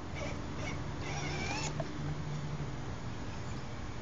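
Electric motor of a battery-powered ride-on toy ATV running in spells as it drives over grass, with a brief high wavering tone about a second in.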